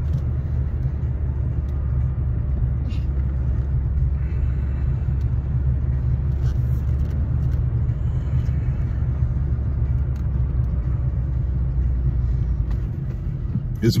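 Steady low rumble of a car's engine and tyres heard from inside the cabin while driving, easing slightly near the end.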